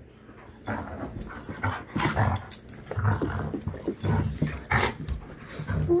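An Alaskan Malamute and a Blue Bay Shepherd play-wrestling and making play noises in short, irregular bursts, starting about half a second in.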